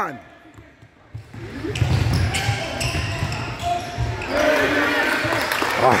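A basketball being dribbled on a hardwood court, a string of bounces starting about a second in, over background voices from players and crowd.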